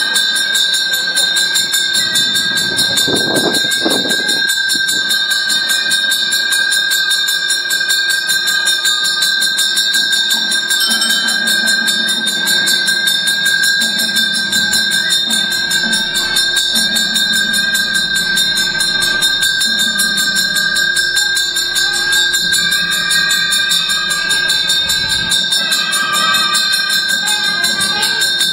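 A temple puja bell rung rapidly and continuously: fast, even clapper strikes over a steady ringing tone, as is done during the puja.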